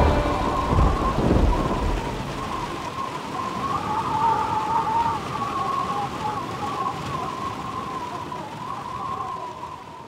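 Sound-effect ambience of steady rain, with a low rumble of thunder fading out over the first two seconds. A thin, wavering high tone is held above it, and the whole bed slowly grows quieter.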